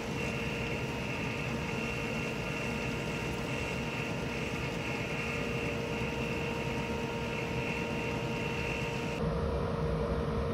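A 9-inch bench disc sander's motor running steadily, with a constant hum and whine, as the end of a small wooden pen blank is sanded flat against the spinning abrasive disc. Near the end the sound cuts to a different steady motor hum with more low rumble.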